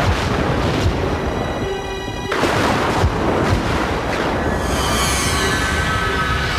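Dark, dense horror-trailer music with deep boom hits, one at the start, one about a second in and a pair around three seconds in. In the second half it swells into a hissing rush.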